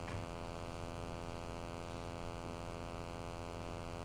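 Steady electrical mains hum: a constant buzz made of many evenly spaced overtones, unchanging throughout.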